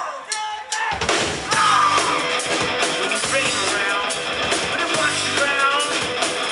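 Live rock band playing, with electric guitars, bass and drum kit. The band drops out briefly at the very start and crashes back in about a second in.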